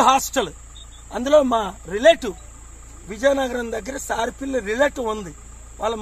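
A steady, high-pitched chorus of crickets under a man talking in short bursts.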